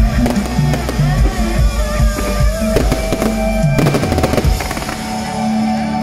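Fireworks crackling and banging in quick bursts, densest about four seconds in, over music playing.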